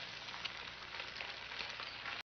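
An egg frying in a hot pan: a steady sizzle with small crackles and pops.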